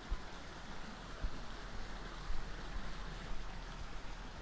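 Steady rushing of water from garden fountains and small waterfalls, with a few low thumps.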